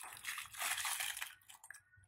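Clear plastic bag of decorative rattan and wicker balls crinkling as it is handled: a dense crackling rustle that thins out near the end.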